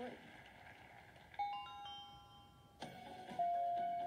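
Wheel of Fortune toss-up sound effects heard through a phone's speaker: a quick run of chiming tones, each new one starting a little after the last as the puzzle's letters appear. About three seconds in, a louder chime with one held tone comes in.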